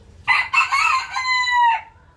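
A rooster crowing once: a few choppy opening notes, then a long held final note that dips in pitch and cuts off just before the end.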